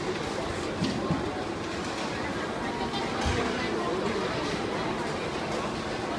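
Busy restaurant ambience: indistinct voices over background music, with a few short knocks of utensils and plates, near 1 s and just after 3 s.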